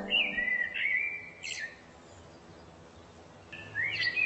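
A songbird singing a phrase of quick, slurred whistled notes for about the first second and a half, then a pause, then a second phrase starting near the end.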